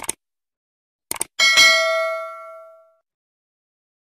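Subscribe-button sound effects: a mouse click, then a quick double click about a second in. These are followed by a notification-bell ding that rings with several tones and fades out over about a second and a half.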